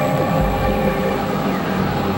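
Experimental electronic music from layered synthesizers: a dense, loud industrial drone of many held tones. A short downward pitch sweep comes near the start, and a deep low rumble swells in about half a second in.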